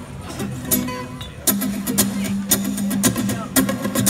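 Guitars played through a stage PA before a song, loose strums about twice a second starting a second and a half in, over a held low note.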